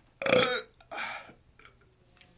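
A man burping: one loud belch, then a second, quieter one about a second in.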